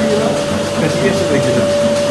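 Milking-parlour machinery running, a steady high whine over a constant machine hum from the milking machine's vacuum system.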